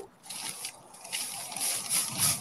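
Dry Postcrete mix poured from its bag into a wet fence-post hole: a gritty, rustling hiss that grows louder in the second half.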